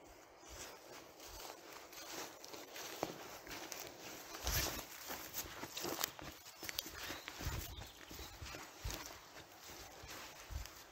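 Footsteps of a person walking outdoors, soft, irregular steps, most of them in the second half, about two a second, over a faint steady hiss of outdoor background.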